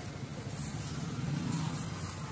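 Steady low roar of a commercial gas stove burner running at full flame under an omelette pan.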